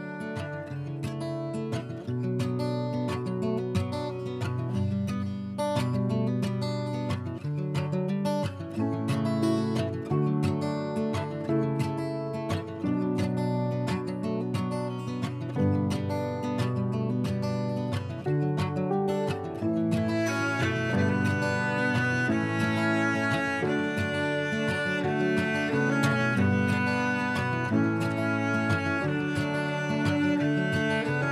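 Instrumental background music, with higher, brighter notes joining about two-thirds of the way through.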